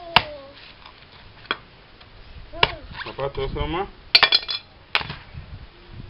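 Sharp knocks and clicks from hard, dry palmyra fruit husks as a wooden stick is pressed and knocked down into them. Single knocks come every second or so, with a quick run of several taps about four seconds in.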